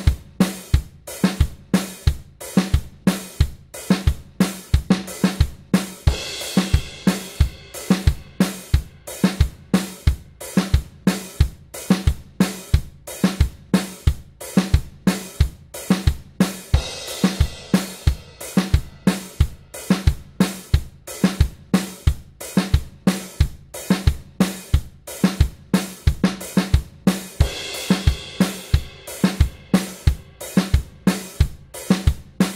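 Programmed calypso drum-kit loop at 90 bpm, played from Superior Drummer samples: kick, snare and hi-hat in a steady repeating pattern. A brighter cymbal stretch comes in three times, about every eleven seconds.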